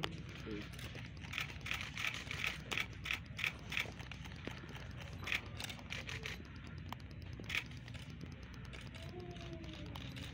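Boots of a marching flag escort striking a concrete surface: a run of faint, uneven taps, about two a second, mostly in the first half.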